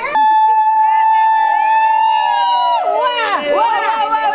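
A woman's high celebratory cry held on one steady note for about two and a half seconds, with other women's voices calling and gliding beneath it. A burst of several voices calling out follows near the end.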